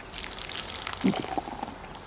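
Hard seltzer pouring down a beer bong's funnel and tube as a woman chugs it from the end of the tube.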